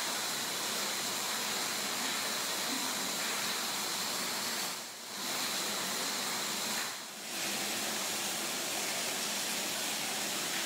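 Steady hiss of water running through a fish-hatchery egg tank, with a faint high whine over it; the sound dips briefly twice, about halfway and again two seconds later.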